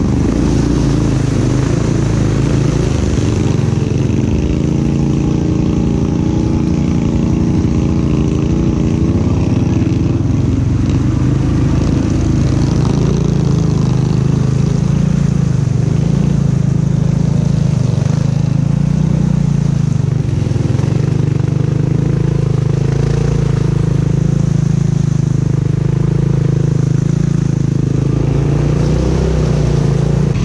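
Honda Rubicon ATV's single-cylinder engine running close up under steady throttle as it drives through deep mud and water, its pitch holding with only small rises and dips.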